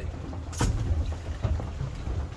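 Steady low rumble of a boat at sea, with one sharp click about half a second in as scuba gear is handled.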